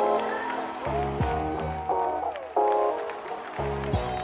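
Intro music: chords changing about every second, with deep bass notes coming in at intervals.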